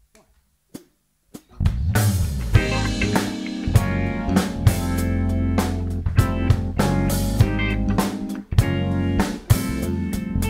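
A live band of drums, electric bass, electric guitars and keyboards starts a song's instrumental intro, coming in loud and all together about one and a half seconds in after two short clicks.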